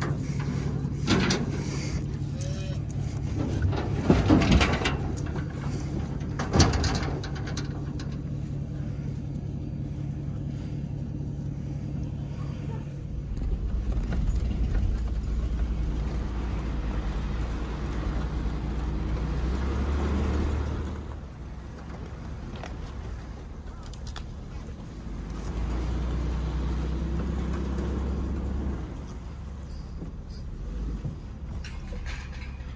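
Several loud clanks of a livestock trailer's slatted side and gate over a steady engine hum, then a pickup truck driving across rough pasture, heard from inside the cab, its low engine rumble swelling and easing.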